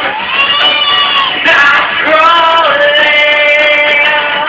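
A man singing a song in long, held notes that slide in pitch, with a short break about a second and a half in.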